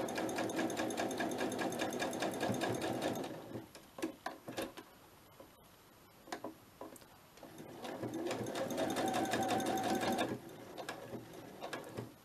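Electric domestic sewing machine stitching layered fabric scraps together in two runs of rapid, even stitching, each about three seconds long. A few seconds of pause between them hold faint clicks and fabric handling.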